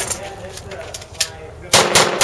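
Pistol shots: two sharp reports about a quarter second apart near the end, the start of a fast string of fire.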